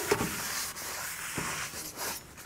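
Cloth rag wiping brake parts cleaner off the metal face of a new brake rotor: a soft, steady rubbing.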